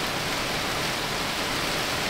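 Hailstorm: a dense, steady hiss and clatter of hail coming down, heard from inside a parked car.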